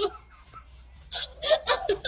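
Laughter: a few short, breathy bursts starting about a second in.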